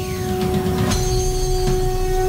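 Channel end-card music: a held synthesized drone over a low rumble, with a sharp hit about a second in.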